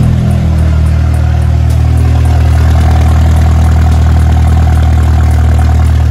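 2002 Volkswagen Polo 1.6 four-cylinder engine idling steadily through a straight-through exhaust, a loud, deep rumble. The muffler apparently sits mid-car, with no silencer at the tailpipe.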